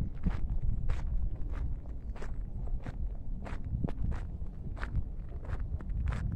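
Footsteps of a person walking on grassy ground, about two steps a second, over a steady low rumble.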